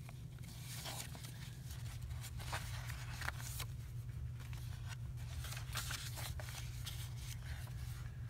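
Paper and card rustling and crinkling in short, irregular bursts as pieces are handled and pressed into a handmade junk journal, over a steady low hum.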